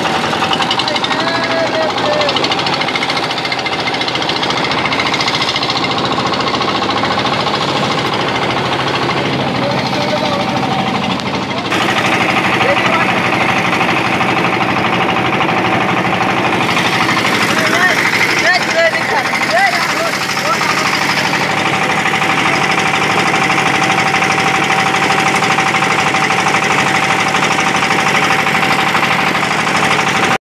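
A boat's engine running steadily underway; it grows a little louder and brighter about twelve seconds in.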